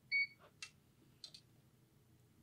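Prostat PRS-801 resistance meter giving one short electronic beep as its TEST button is pressed to start a measurement, followed by a few faint clicks.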